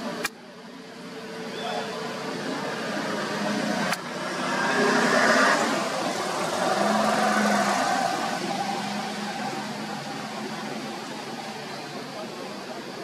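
Rushing outdoor background noise that swells about four seconds in, holds for a few seconds, then slowly fades.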